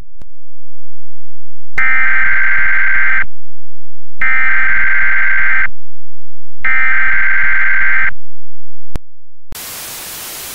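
Emergency Alert System header tones: three harsh, buzzy bursts of digital data, each about a second and a half long and about a second apart. Near the end comes a short burst of TV static hiss.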